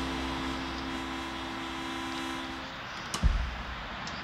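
The last notes of acoustic guitar music ringing out and fading, stopping about two and a half seconds in. A single sharp thump follows just after three seconds, then a steady faint background hiss.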